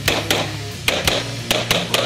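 Grand Power X-Calibur pistol fired rapidly, about six sharp shots in quick pairs, over background rock music.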